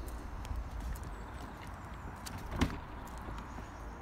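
Porsche 718 Cayman door being opened: a single latch clunk about two and a half seconds in, with a few faint clicks before it, over a steady low rumble.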